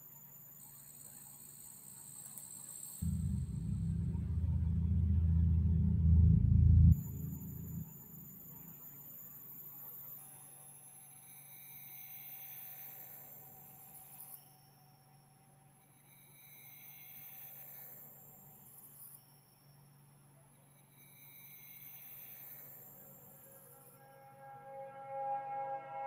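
Ambient electronic soundtrack of an immersive installation video. A loud, deep low drone lasts about four seconds and cuts off suddenly, followed by quieter swells that rise and fall every four to five seconds over a faint steady tone. Ringing pitched tones come in near the end.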